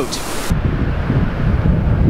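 Wind buffeting the microphone in uneven low rumbles, with ocean surf washing in the background. A brighter hiss cuts off sharply about half a second in.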